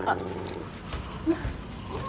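Bull terrier making short vocal sounds: one right at the start and a brief one a little past a second in.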